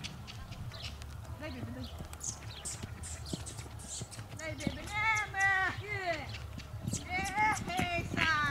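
Hooves of heavy draft horses thudding on soft dirt as they trot and canter loose around a paddock. A horse whinnies about halfway through, with a shrill, quavering call, and again near the end.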